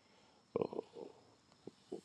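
A man's faint throat and mouth sounds between words: a brief low creaky murmur about half a second in, a softer one near one second, and a small click near the end.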